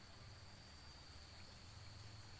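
Faint insects calling: a steady high whine, joined about a second in by rapid high-pitched chirping at about five pulses a second, over a low rumble.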